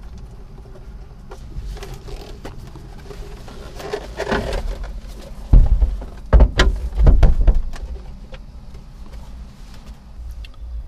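Clicks and rattles of a cable connector being plugged into a sprayer controller and the unit being handled. Several heavy knocks come in a cluster near the middle and are the loudest sounds.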